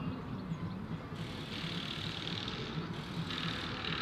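Outdoor urban ambience: a steady low rumble of traffic. About a second in a hiss comes in over it and drops away just before the end, like a vehicle passing.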